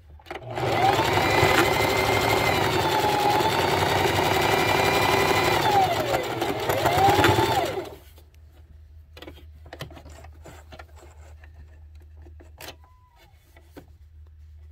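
Electric sewing machine stitching back over a seam, running steadily from about half a second in. Its motor slows and picks up again shortly before it stops about eight seconds in. Quieter handling clicks follow.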